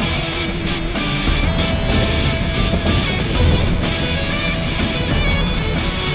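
Loud background music led by guitar, running steadily.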